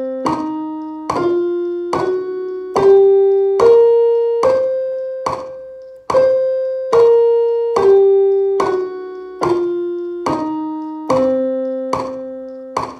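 Portable electronic keyboard on a piano voice playing a C blues scale one note at a time, a little over one note a second. It climbs an octave, holds the top C, and steps back down to the low C.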